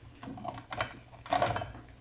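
Radio-drama sound effect of someone moving in a hallway: a run of faint taps and clicks, like footsteps.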